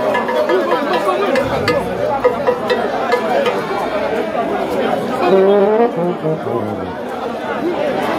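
Low horn notes from a Haitian rara band over loud crowd chatter, with a short run of notes stepping down in pitch about two-thirds of the way through.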